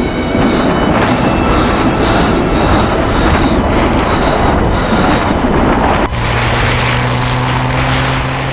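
Loud, rushing roar of wind gusting against a tent. About six seconds in it cuts off abruptly to a steady low hum.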